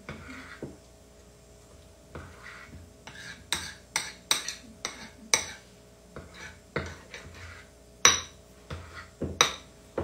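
Spoon stirring a flour-and-water poolish in a small ceramic bowl, clinking sharply against the side of the bowl about ten times at irregular intervals, most of them from about three seconds in.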